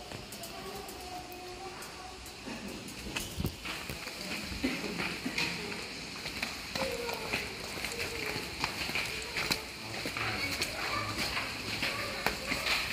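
Faint voices of people talking in the background inside a cave, with scattered short clicks of footsteps on the stairs.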